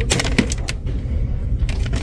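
Hard plastic storage basket and its lid being handled: a few sharp plastic clicks and knocks over a steady low rumble.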